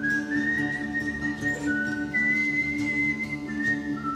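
A man whistling a slow melody of a few held notes that step up and down, over a steady droning guitar.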